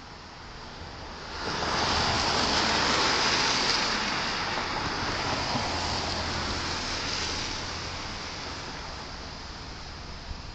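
A car passing close by on the road, its tyre and engine noise swelling about a second and a half in and slowly fading away.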